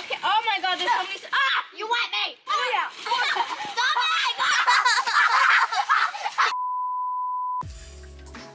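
A girl's excited, high-pitched voice, cut off near the end by a steady single-pitch beep lasting about a second, of the kind added in editing; background music starts right after it.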